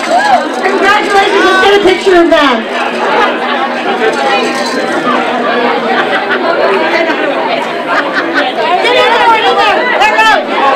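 Crowd chatter: many voices talking over one another in a large hall.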